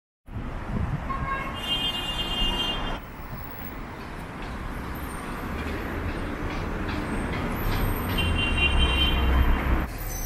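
City street traffic noise, a steady rumble of passing cars. A car horn sounds twice, about a second and a half in and again near the end, each time for over a second.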